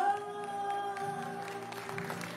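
A male voice holds a long final sung note over a ringing acoustic guitar chord as the song closes, the sound fading. A few faint sharp claps come in from about a second in.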